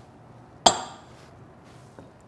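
A single sharp clink of a kitchen utensil striking a hard bowl, ringing briefly as it fades.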